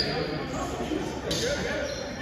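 Indistinct voices echoing in a large gymnasium, with a brief sharp, high noise partway through.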